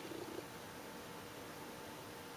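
Quiet room tone with a faint steady hum, and a brief faint murmur right at the start.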